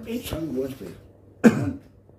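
A man's single short cough about one and a half seconds in, the loudest sound here, after a few muttered words.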